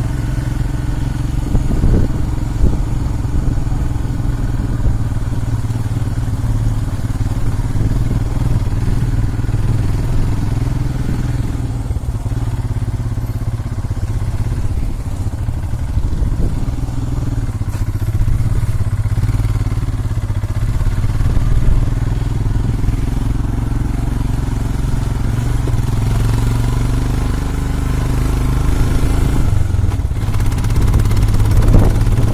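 Motorcycle engine running steadily under way, heard from on the rider's own bike, its pitch easing a little in the middle and picking up near the end.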